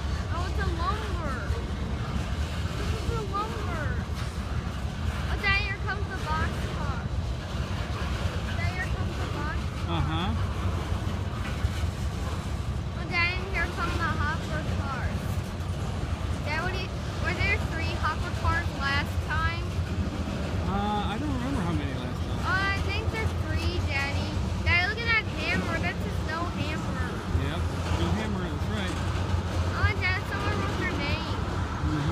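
Freight cars of a CSX mixed freight train rolling past at steady speed: a continuous low rumble of steel wheels on rail, with high chirps coming and going over it.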